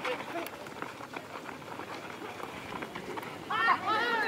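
Outdoor spectator chatter and murmur around a football pitch, with a sharp knock of the ball being kicked right at the start. A voice shouts near the end.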